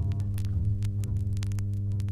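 Steady low electrical hum with irregular static clicks and crackles over it.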